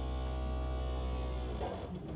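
A steady low electrical hum or buzz with many even overtones, which stops fairly suddenly near the end.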